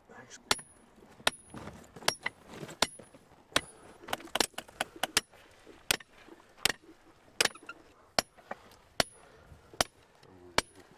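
Steady hammer blows on a steel tool being driven under a plaster-jacketed fossil block to break it free of the bedrock: a sharp, ringing metallic clink about every three-quarters of a second.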